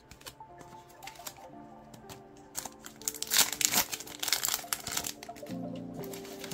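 Foil booster pack wrapper crinkling and tearing open, loudest from about three to five seconds in.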